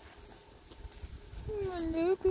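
A single drawn-out vocal call starts about a second and a half in, dipping and then rising in pitch. A short second note follows right after.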